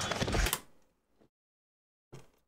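Gunfire in a sketch's soundtrack, ending in a sharp crack about half a second in. The sound dies away within a second and then cuts to dead silence as playback is paused.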